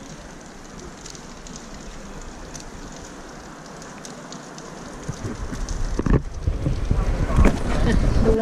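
Steady hiss of light rain on a wet stone street. About five seconds in, louder low rumbling of wind buffeting the microphone builds up and covers it.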